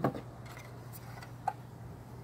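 Phone camera handling: a few light clicks and taps, one sharper click about one and a half seconds in, over a steady low hum.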